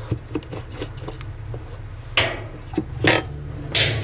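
Plastic agitator coupling being pushed onto the washing-machine transmission shaft by hand: a few light clicks, then three short scraping rubs of plastic on the shaft and tub.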